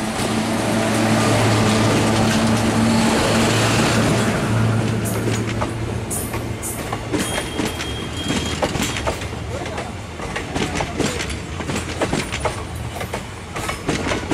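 Indian Railways electric locomotive passing close by with a steady low hum, followed from about five seconds in by passenger coaches rolling past, their wheels clicking over the rail joints in a fast, uneven clatter.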